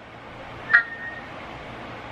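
A single short electronic beep from a mobile phone about three-quarters of a second in, lasting about half a second, over faint room noise.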